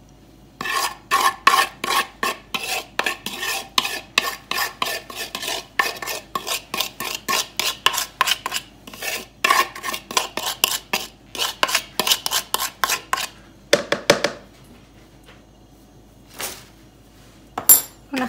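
A metal spoon scraping spiced oil and seasoning out of a wooden bowl onto potato wedges, in quick repeated strokes several times a second. The scraping stops about 13 seconds in, followed by a few single scrapes or clinks.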